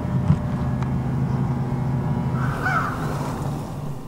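A steady low mechanical hum, with a short bird call about two and a half seconds in.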